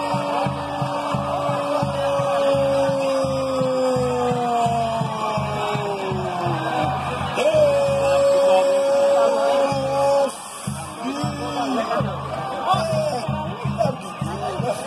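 A football commentator's long drawn-out goal cry, one held shout that slides slowly down in pitch and then a second shorter held shout, over background music with a steady beat.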